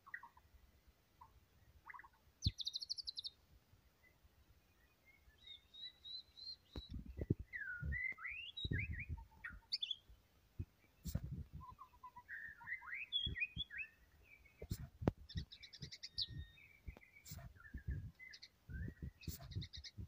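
White-rumped shama (murai batu) singing vigorously in a cage: a run of varied, quick phrases of gliding whistles and notes, broken by buzzy rattling trills, first about two and a half seconds in and again past the middle. Low thuds come in among the song from about a third of the way in.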